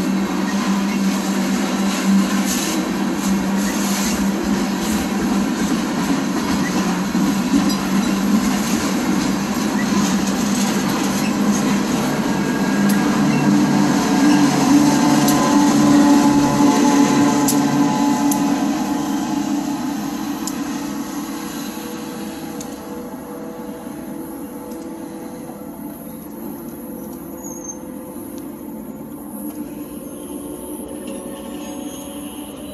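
CSX freight train rolling past at a grade crossing, its cars rumbling and clattering over the rails. A locomotive at the tail end passes about halfway through, the loudest part. After that the sound fades steadily as the train moves away.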